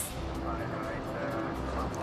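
Steady rumble and hiss of an Airbus A380 rolling down the runway just after touchdown, heard inside the cockpit, with soft background music underneath.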